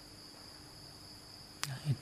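Faint steady high-pitched insect trill, like crickets, going on without a break under a low hum. A sharp click comes about one and a half seconds in.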